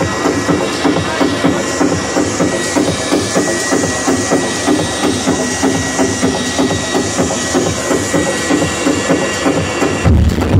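Techno played by a DJ through a club PA system, with a steady beat at about two beats a second and a sustained high synth tone.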